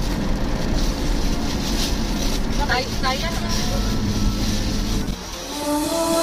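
Steady rumble of a car driving, heard inside the cabin, with a short voice about three seconds in. The rumble drops away about five seconds in and music starts near the end.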